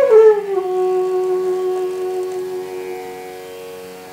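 Bansuri bamboo flute gliding down to a long held note in Raag Bhairavi, the note slowly fading away, over a steady drone.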